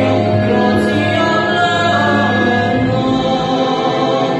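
A male singer's solo vocal performance over a musical accompaniment, a slow piece sung in long held notes, heard from the audience seats of a hall.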